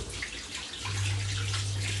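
Puff-puff dough balls deep-frying in a pot of hot oil: a steady crackling sizzle. A low steady hum joins just under a second in and carries on.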